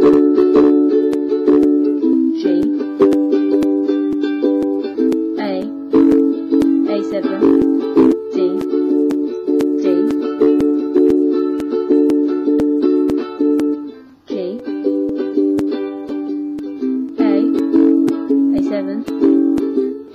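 Ukulele strummed steadily through the chord progression D, G, A, A7, changing chord every few seconds. There is a brief break in the strumming about two-thirds of the way through.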